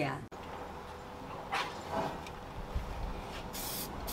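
A short hiss of an aerosol spray-paint can, about half a second long near the end, spraying paint through a stencil onto a steel skip.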